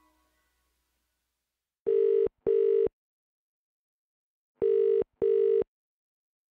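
Telephone ringing tone in a double-ring pattern: two pairs of short, steady buzzing rings, the first pair about two seconds in and the second near the end.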